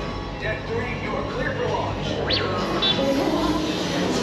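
Background music with indistinct voices of people around, and a brief high chirp a little over two seconds in.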